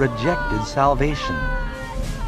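A woman wailing in anguish: two drawn-out cries that rise and fall in pitch, over sustained background music.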